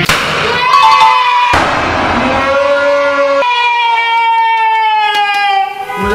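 Two sudden bursts about a second and a half apart, fitting party poppers shooting paper-heart confetti, followed by a long drawn-out cry with several tones whose pitch slowly falls.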